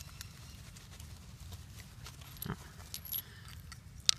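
A hand rummaging in a leather pouch to pull out pitch sticks: faint rustling of hide and a few light clicks of small tools, over a steady low rumble, with a short "oh" about halfway through.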